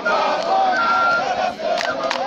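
A group of marching trainees chanting loudly together, with long held notes. A few sharp clicks come near the end.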